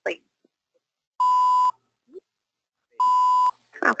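Two identical steady bleep tones, each about half a second long and starting nearly two seconds apart, laid over a recorded phone call where the caller gives their phone number: a censor bleep blanking out the number. A brief faint scrap of voice sits between the bleeps.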